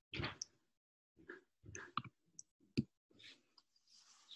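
A few faint clicks and soft rustles close to the microphone, with one sharper click a little before three seconds in.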